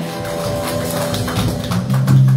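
Live worship band music in a hall: steady low notes under a run of quick light percussive taps.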